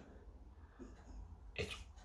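A quiet pause in a man's talk, with only faint room noise, then one short spoken word near the end.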